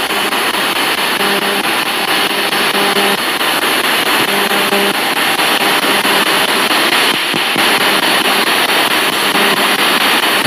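Spirit box (ghost box) radio sweeping through FM stations: loud, continuous static hiss chopped with short snatches of broadcast sound that cut in and out every fraction of a second.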